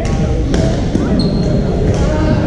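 Badminton rackets striking shuttlecocks in a large, echoing sports hall: a sharp hit at the start, another about half a second later and one more near the end, over steady crowd chatter from the surrounding courts. A short high squeak, like a shoe on the court floor, sounds in the second half.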